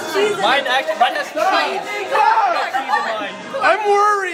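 Chatter: several people talking and calling out over one another.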